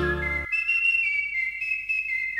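A person whistling a slow melody of long, high held notes. The plucked-string accompaniment of a música llanera song stops about half a second in, leaving the whistling alone.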